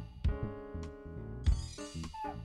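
Live looped instrumental music: layered keyboard chords over deep, regular beats, with a short phrase, including a sliding note, repeating every couple of seconds.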